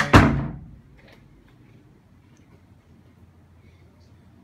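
A single loud, resonant thump right at the start, ringing out briefly. After it comes only the faint, steady noise of the split air conditioner's indoor fan running on low.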